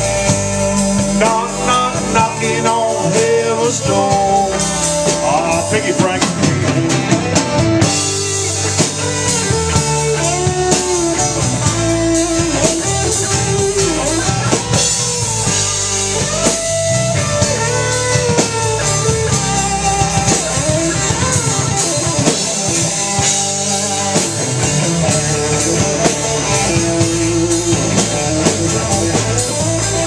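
Live band playing a blues number on electric guitars and drum kit, with a lead line of bending notes over the steady backing.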